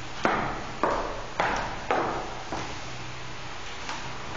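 Footsteps of hard-soled shoes on a wooden floor, about two a second, each with a short ring from the room. They stop about two and a half seconds in.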